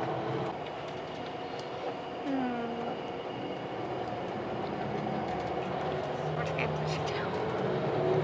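Steady engine and road noise inside a moving coach bus, with a low running hum.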